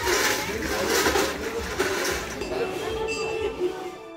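Indistinct voices over a steady noisy background, with a few held tones near the end.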